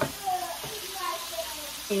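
Ground beef frying in a skillet: a steady sizzle, with a sharp click of a utensil or pan at the very start.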